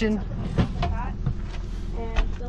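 A steady low rumble throughout, with a brief bit of voice about half a second in.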